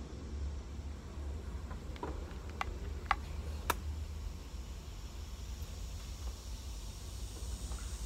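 Outdoor ambience heard from a screened-in porch: a steady low rumble, with a few faint clicks between about two and four seconds in.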